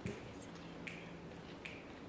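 Soft finger snaps, about one every 0.8 seconds, counting off the tempo before a jazz big band comes in, over a faint steady low hum.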